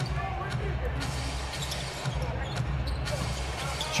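A basketball being dribbled on a hardwood court during live play, with faint voices over a steady low arena rumble.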